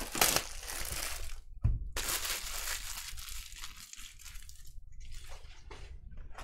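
Cardboard baseball-card hobby boxes being handled and shifted, with continuous rustling and crinkling and a soft knock about a second and a half in as a box is set down.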